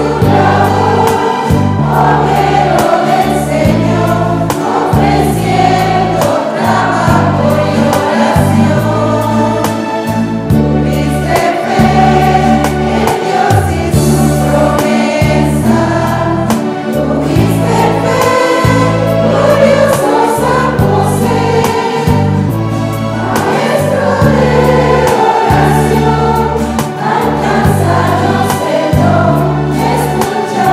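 A church congregation singing a hymn together from song sheets, over instrumental accompaniment with a low bass line that moves from note to note about once a second.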